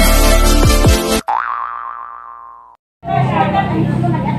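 Electronic intro music with repeated falling bass sweeps cuts off about a second in. A wobbling boing-like sound-effect tone follows, rising, wavering and fading away over about a second and a half. After a brief silence, voices and restaurant room noise come in.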